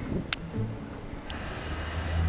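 Low, steady rumble of a hand-pulled rickshaw rolling along a paved street, with one sharp click about a third of a second in.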